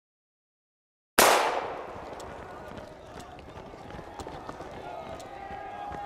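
Silence, then about a second in a sudden loud bang that dies away over about half a second, followed by faint background voices and a wristwatch ticking about once a second.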